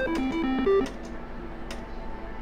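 Mechanical-reel Double Diamond slot machine playing its electronic spin tune of quick stepping beeps. The tune cuts off a little under a second in as the last reels click to a stop, leaving a quieter stretch of background hum.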